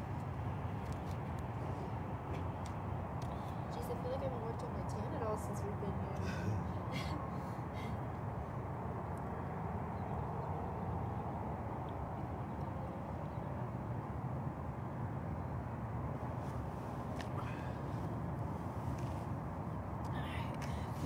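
Steady outdoor background noise, a constant low rumble with no distinct events.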